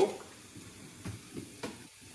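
A few soft knocks of a measuring cup scooping pancake batter from a mixing bowl, over a faint steady hiss.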